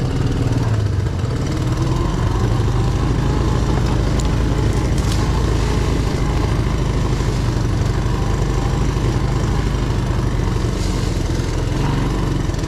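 Engine of a Honda three-wheeler ATV running steadily at low riding speed, heard close up from the rider's seat.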